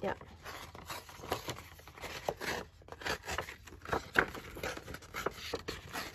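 Sheets of printed craft paper being handled and shuffled over a cutting mat: a series of short, irregular rustles and scrapes.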